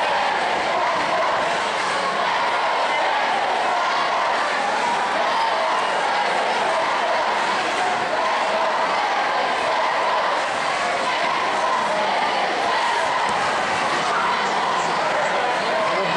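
Crowd of spectators shouting and cheering, a steady din of many overlapping voices.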